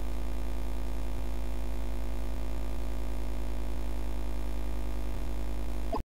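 Steady low electrical hum, a mains-type buzz with evenly spaced overtones, with faint ticks through it and a short click near the end.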